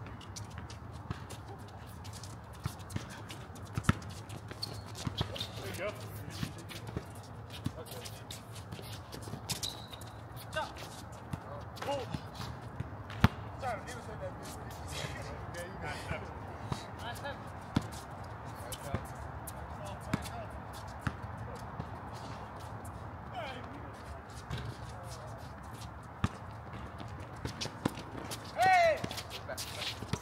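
Outdoor pickup basketball game: a basketball bouncing on the hard court in sharp, scattered knocks, with players' footsteps and occasional distant shouts. One knock about halfway through is louder than the rest.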